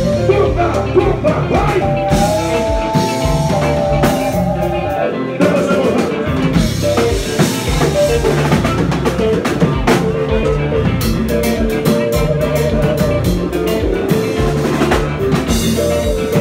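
A live konpa band playing: drum kit beating a steady groove under bass and electric guitar, with a few long held melodic notes that waver slightly.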